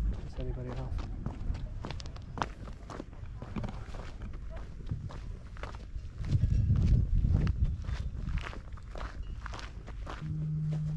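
Footsteps on a gravel path: irregular sharp crunches one after another. About six seconds in, a low rumble on the microphone is briefly the loudest sound.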